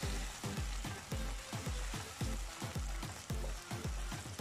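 Chicken pieces frying in ghee on high heat in a wok, sizzling steadily as they are stirred with a wooden spoon. Background music with a steady low beat about twice a second plays over it.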